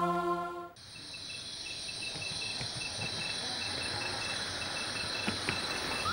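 A sustained music chord cuts off less than a second in, giving way to crickets chirping steadily: a high continuous trill with a repeating pulsed chirp, and two faint clicks near the end.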